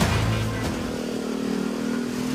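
Road traffic: car and motorcycle engines running with a steady hum, with background music underneath.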